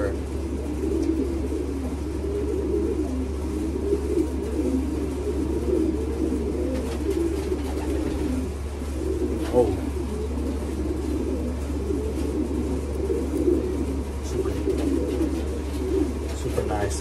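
Racing pigeons cooing in a loft, many overlapping coos that run on steadily, with a steady low hum underneath.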